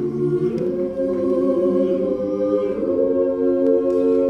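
Mixed choir of women's and men's voices singing a cappella, holding sustained chords that move to new ones about half a second in and again near three seconds.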